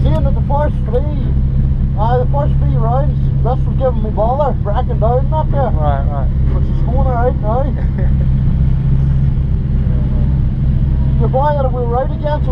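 A heavily modified Nissan S15 Silvia drift car's engine idling steadily, a constant low hum heard from inside the cabin, with voices talking over it.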